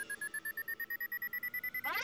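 Cartoon sound effect: a rapid electronic beeping trill, more than a dozen pulses a second, its pitch rising slowly, with an upward sweep near the end.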